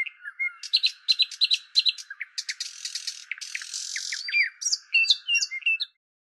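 Birds chirping and whistling in a quick run of short calls, with a couple of buzzy rasps in the middle, cutting off abruptly near the end.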